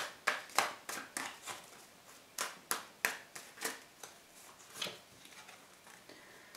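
Tarot cards handled and laid down on a wooden table: a run of sharp card taps and snaps, about three a second, with a short pause about two seconds in.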